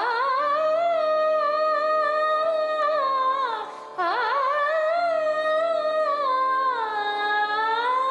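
A woman singing long held vowel notes in Bengali semi-classical style, with no words. Each phrase swoops up into the note, once at the start and again about four seconds in, and the pitch dips and rises slowly near the end. A steady low accompaniment runs beneath the voice.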